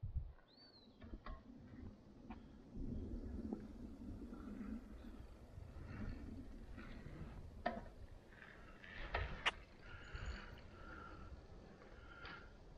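Faint outdoor ambience: a low rumble with a few short bird chirps and scattered clicks.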